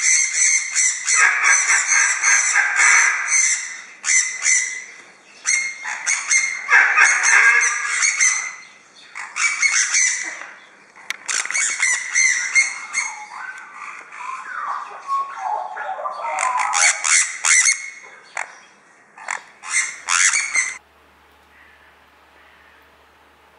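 Sun conures screeching: loud, shrill calls in rapid runs of repeated shrieks broken by short pauses, stopping abruptly near the end.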